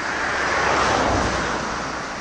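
A road vehicle passing close by, its tyre and engine noise swelling to a peak about a second in and then fading.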